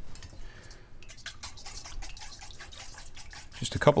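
A fork clicking rapidly against a stainless steel mixing bowl as eggs and milk are whisked together. A man's voice comes in near the end.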